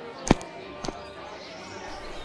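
Light footsteps, about two a second, with the loudest step about a third of a second in, over a faint steady background hiss.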